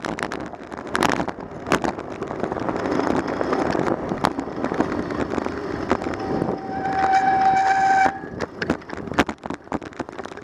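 Wind and road noise from a bicycle riding over city pavement, with frequent sharp rattles and knocks from bumps. About six seconds in, a steady high-pitched tone sounds for about two seconds, then stops suddenly.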